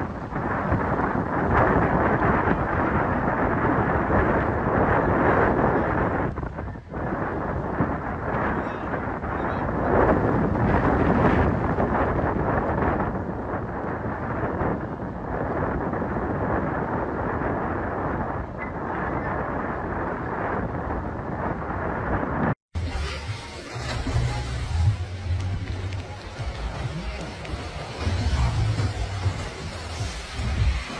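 Steady, loud roar of hurricane wind and rain on the microphone. It cuts off suddenly about three-quarters of the way through, and a second storm recording with gusty low wind rumble starts.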